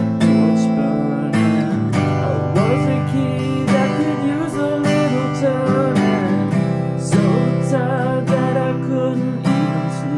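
Cutaway Faith steel-string acoustic guitar strummed in a steady rhythm, changing chords every second or two through the verse progression of C, G with B in the bass, A minor and G major.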